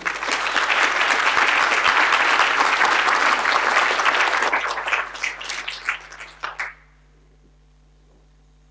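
Audience applauding: dense clapping that thins to scattered claps about five seconds in and stops about a second and a half later.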